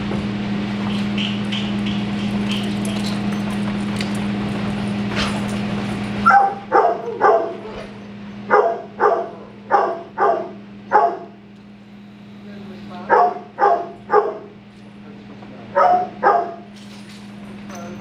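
A dog barking in short bursts of two or three sharp barks, starting about six seconds in and repeating every second or two. Before the barking starts, a steady hum of room noise.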